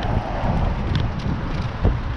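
Wind buffeting the microphone of a bike-mounted camera while riding, with steady road noise underneath and a short knock just before the end.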